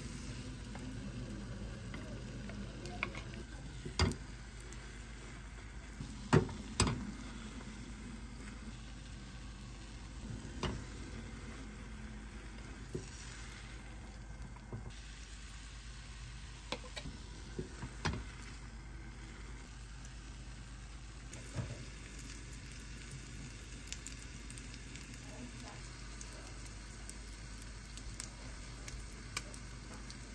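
Egg mixture sizzling in an oiled rectangular rolled-omelette pan, with sharp knocks now and then from a wooden spatula tapping and pushing against the pan as the omelette is rolled.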